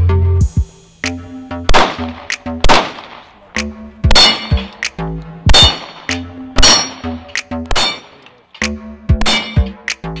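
Pistol shots fired in a slow string, roughly one every second or so, with steel targets clanging and ringing at the hits. A music track plays underneath.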